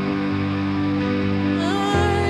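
Held keyboard chords from a Roland RD-2000 stage piano, a slow worship accompaniment in a gap between sung lines. A woman's singing voice slides back in near the end.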